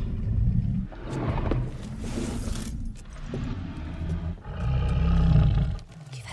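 Deep, low rumbling in four surges, the last and loudest near the end.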